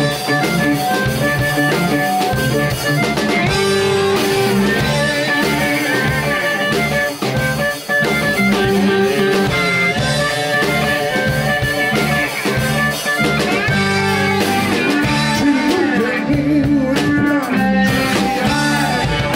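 Live electric blues band playing an instrumental passage: amplified harmonica played into a cupped hand-held microphone, over electric guitar, bass and a drum kit, with bending notes throughout.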